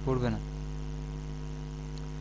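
Steady electrical mains hum, an unchanging low drone with several even overtones, on the recording. A man's voice finishes a word in the first half second.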